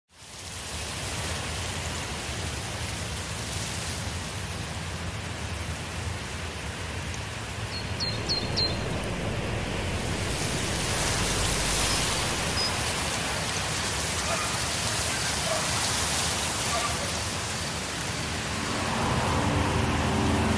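Steady rushing noise, like a wind or rain ambience, that fades in at the start and grows a little louder about halfway through, over a low steady hum. Three short high chirps come about eight seconds in.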